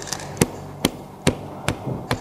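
Four sharp taps or knocks in an even rhythm, a little under half a second apart, over quiet room tone.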